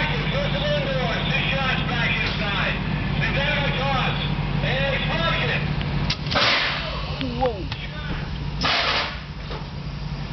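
Two loud gunshots, about two and a half seconds apart, the first about six seconds in: blanks fired in a western stunt scene.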